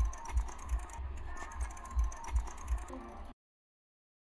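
Bicycle freewheel ticking as the bike is pushed along, over soft low thuds about two or three times a second; the sound cuts off suddenly about three seconds in.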